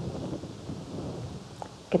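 Clothing rubbing against a clip-on lapel microphone: an uneven low rumble with faint rustling, from the arms moving as the palms are pressed together.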